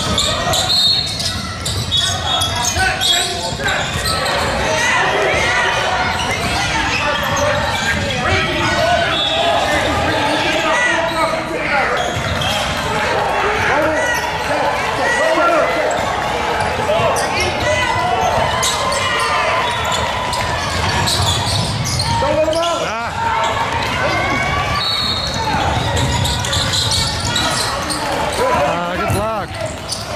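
A basketball bouncing on a hardwood gym floor during play, with indistinct voices of players and spectators throughout, echoing in a large gym.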